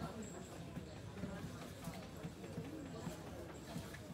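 Indistinct voices talking in the background, with a few light clicks or taps.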